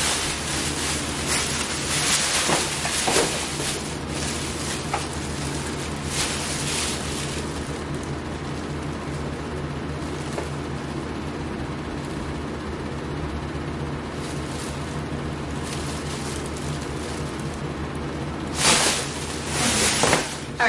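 Thin plastic shopping bags crinkling and rustling as they are lifted and handled, in bursts through the first several seconds and again near the end, over a steady low hum.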